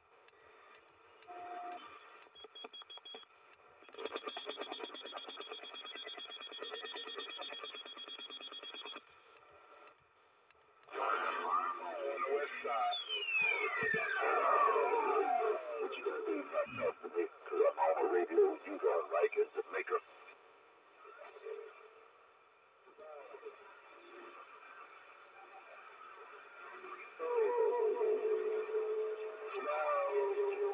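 CRT SS-9900 CB radio on AM in the 27 MHz band receiving distant stations: distorted voices through static, fading in and out between stretches of hiss. A steady buzzing carrier tone sounds from about four to nine seconds in, and in the middle a whistle glides down in pitch over about three seconds.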